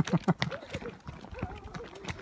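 Horse hoofbeats on a dirt track: an irregular run of dull thuds, several a second, from a horse moving at a brisk gait.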